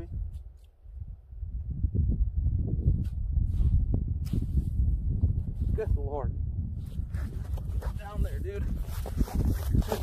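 Wind rumbling on the microphone, uneven and gusting, briefly dropping away about a second in. A few short, unclear spoken words come through in the second half.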